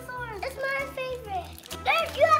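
Young children's voices chattering over background music with a steady low bass line.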